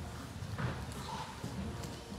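Footsteps of several people walking up a church aisle, irregular soft knocks, with faint murmuring voices.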